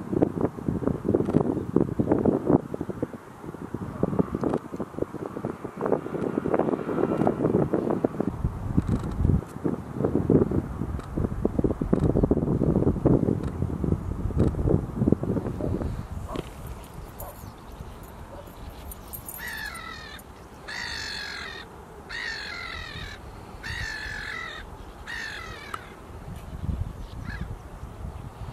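A bird calls five times in about six seconds, in the second half. Before the calls, wind buffets the microphone with a low rumble.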